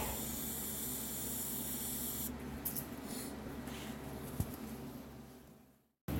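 TIG welder arc burning steadily on a V-band flange joint of an exhaust pipe: a high-pitched hiss over an electrical hum. The arc cuts off about two seconds in, leaving a fainter hum that fades away.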